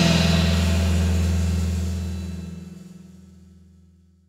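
A rock band's final chord ringing out after the last hit, a deep bass note holding under it, fading away over the last two seconds.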